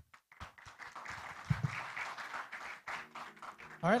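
Audience applauding after a presentation, clapping that starts about half a second in and dies away just before the end.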